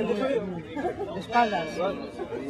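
Several people talking at once: overlapping background chatter of voices.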